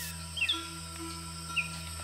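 Two short bird chirps in the rainforest, one about half a second in and one about a second and a half in, over a soft, steady background music drone.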